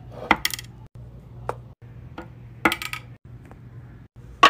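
Small hard-wax beads dropped into the empty aluminium pot of a wax warmer, clinking sharply against the metal in a few irregular hits, over a low steady hum.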